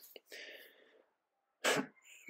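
A man's pause between sentences, mostly quiet, with a faint breath just after he stops talking and a short, sharp intake of breath near the end before he speaks again.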